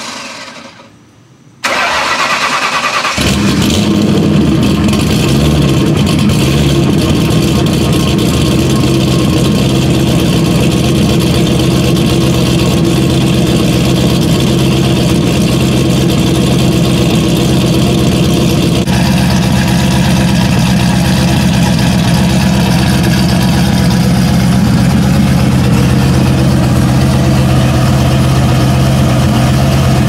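Turbocharged Ford 4.6-litre two-valve V8 being started: the starter cranks briefly, the engine catches about three seconds in, then settles into a loud, steady idle.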